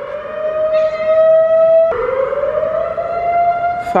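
Civil-defence warning siren wailing during its monthly first-Monday test, a loud pitched wail that slowly rises; about halfway its pitch drops suddenly, then climbs again.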